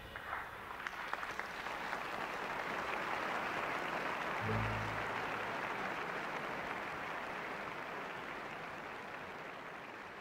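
Audience applause in an opera house right after the final chord: a few scattered claps at first, quickly thickening into full, even applause that slowly fades out toward the end. A brief low thud sounds about four and a half seconds in.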